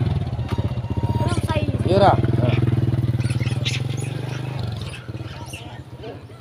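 Motorcycle engine running steadily at an even pitch, then cutting out about three-quarters of the way through.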